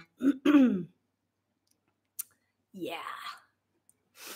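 A woman clearing her throat: two short voiced bursts falling in pitch, then a longer, breathier one about three seconds in, with a small click between them.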